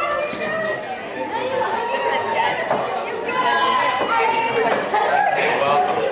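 Many voices chattering at once: several overlapping conversations in a group of people.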